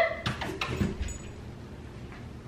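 A few soft thuds of footsteps and a dog's paws on the floor in the first second as a person leads a dog away, then quiet room tone.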